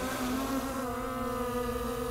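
Skydio 2 quadcopter drone flying close by, its propellers giving a steady, even-pitched hum.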